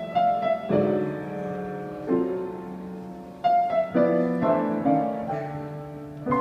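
Grand piano played by hand at a slow pace: chords struck every second or so, each left to ring and fade, with a run of quicker notes in the second half.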